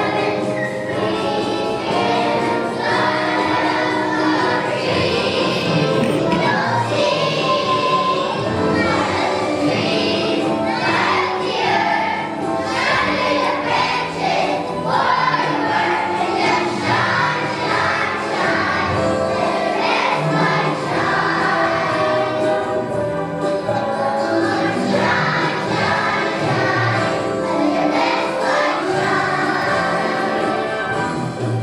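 A choir of first-grade children singing a Christmas song together, with music behind them.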